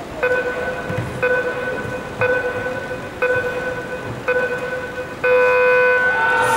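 Electronic start countdown of a track-cycling start clock: five short beeps a second apart, then a long beep about five seconds in that signals the start.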